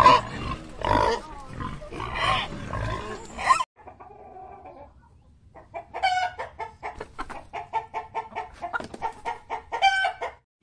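Pigs grunting in a group for the first few seconds. After a short lull comes a chicken clucking in a rapid run of short notes, several a second.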